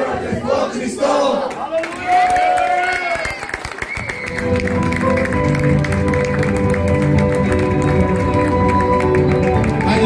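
Voices and some cheering from a crowd. About four seconds in, music with held chords and a steady bass comes in, and people clap along.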